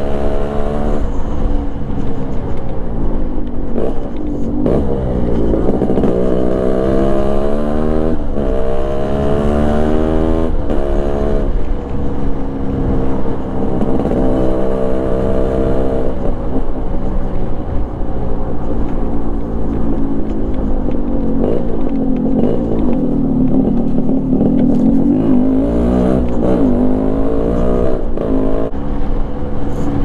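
Yamaha RXZ's single-cylinder two-stroke engine being ridden, its pitch climbing and dropping back several times as the throttle is opened and closed through the gears, with wind rumble on the microphone.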